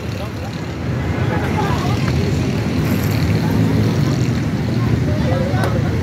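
A steady low rumble that grows a little louder after about a second, with faint voices at moments.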